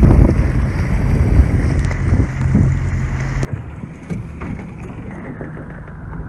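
Coast Guard patrol boat under way: a steady engine hum under loud rumbling wind and water noise on the microphone. About three and a half seconds in the sound cuts abruptly to a quieter, even wash.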